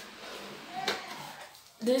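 A single small click about a second in, as a button on the ring light's dimmer control is pressed to change the brightness. A faint bit of voice comes just before it.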